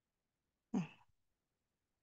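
A woman's single short throat-clearing 'hmm', about a second in, with near silence around it.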